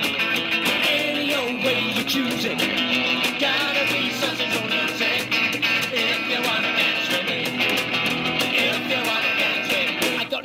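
Live rock-and-roll band music played on electric guitar, a snare drum hit with sticks and an upright double bass, running steadily.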